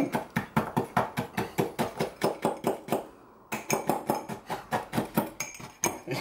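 Metal fork jabbing Oreo cookies against the bottom of a ceramic mug to crush them: rapid knocks and clinks, about seven a second, with a brief pause about three seconds in.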